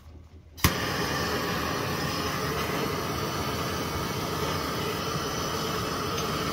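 A hose-fed gas torch lights with a sharp click about half a second in, then its flame hisses steadily while heating the brass fitting on a copper pipe for soldering.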